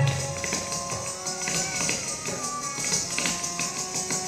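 Kathak footwork: brass ghungroo ankle bells jingling continuously with quick bare-foot taps and stamps on a wooden stage, over a melodic accompaniment of held notes.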